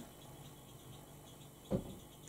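Faint scratching of a makeup brush picking up shimmery silver eyeshadow from a palette pan, over quiet room tone, with one short soft sound near the end.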